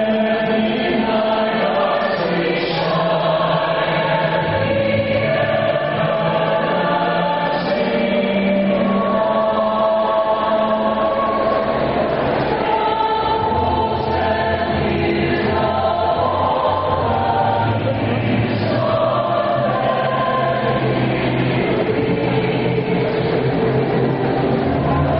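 A choir singing slow, long-held chords.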